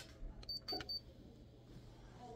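Three quick, faint, high electronic beeps from a vital-signs monitor about half a second in, signalling that the blood pressure reading is done.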